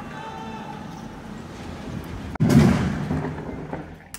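Falling sections of a tower crane crashing to the ground a little past halfway: one sudden loud crash followed by a rumble that dies away over about a second and a half.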